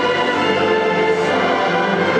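A large school orchestra and massed choir performing together, holding steady sustained chords.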